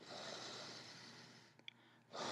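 A person blowing a long breath onto a finger puppet's wet watercolor paint to dry it; the airy rush fades out after about a second and a half.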